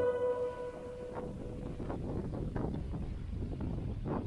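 A held note of background music fades out in the first half second. It gives way to a steady low rumble of wind on the microphone, with faint irregular buffets.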